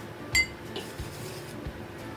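A single sharp clink with a short ringing tone, about a third of a second in, from a hard object knocking against a hard container; a few soft knocks of handling follow.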